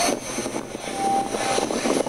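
Steady noise of a subway platform beside a standing subway train, with a short laugh right at the start.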